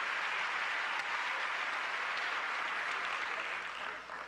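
Theatre audience applauding steadily, dying away near the end.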